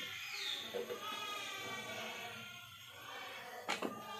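Faint singing in the background, with held notes, and a short sharp click about three and three-quarter seconds in.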